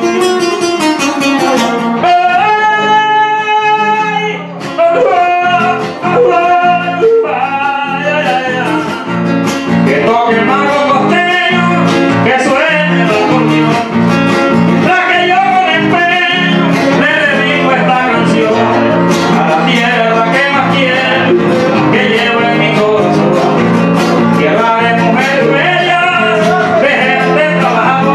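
A man singing into a microphone, accompanied by an acoustic guitar. He holds one long note about two seconds in, then carries on with a wavering melodic line over the plucked guitar.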